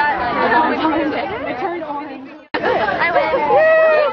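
Overlapping chatter of several people talking in a crowd. The sound fades out about two and a half seconds in and cuts back in abruptly at an edit, with one voice drawn out near the end.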